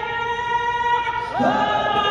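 A woman singing a national anthem solo into a microphone, amplified in an arena. She holds one long note, then slides into the next phrase about one and a half seconds in.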